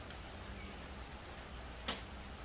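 A coin clinking sharply once near the end as it is dropped onto other coins, with a fainter click just after the start, over a low steady hum.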